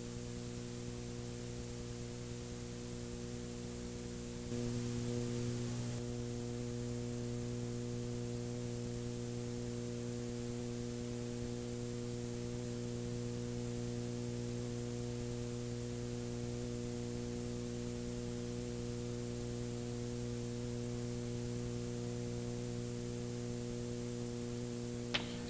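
Steady electrical mains hum with several even tones over a faint hiss. It gets slightly louder about four and a half seconds in and then holds steady.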